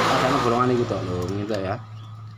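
A man speaking, over a steady low hum and a rushing background noise that fades about a second in.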